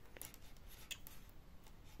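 Faint, scattered light clicks of metal knitting needles as stitches are worked in yarn.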